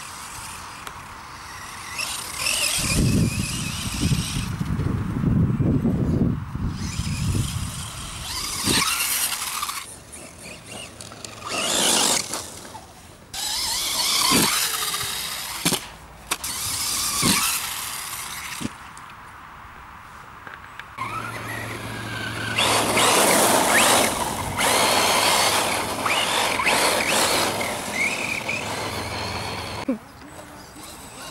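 Brushless electric 1:10 RC buggy driving hard: the motor's high whine rises and falls in bursts with the throttle, over tyre noise. A low rumble joins it for a few seconds near the start.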